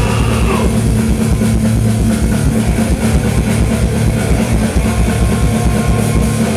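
Rock band playing live with electric guitars, bass and drum kit, loud and driving with a steady drum beat; no singing through most of the passage.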